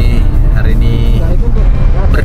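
Steady low rumble of a car on the move, heard from inside the cabin, under a man's voice and background music.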